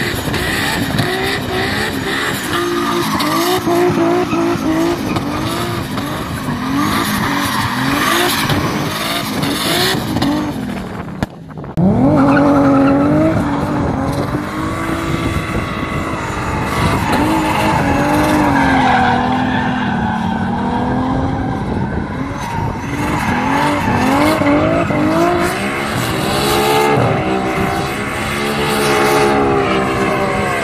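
Tuned 700 hp Nissan Skyline R32 GT-R engine revving hard, its pitch rising and falling again and again as the car drifts, with tyres skidding on wet tarmac. The sound briefly drops about eleven seconds in, then comes back suddenly at high revs.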